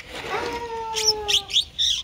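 Small birds chirping, with a few quick, sharp high chirps in the second half. Before them comes a longer, slightly falling lower tone.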